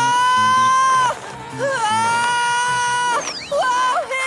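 A high cartoon voice letting out long drawn-out yells, one note of about a second, then another with a downward break between, over action music with a steady low beat.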